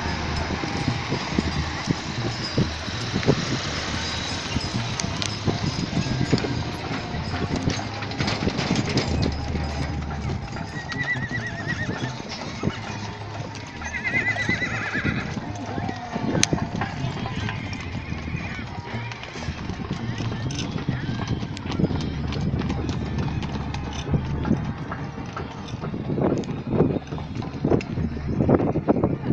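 Many horses walking past in a column, hooves clip-clopping irregularly on a dirt track, with a horse whinnying about halfway through. Riders' voices chatter in the background.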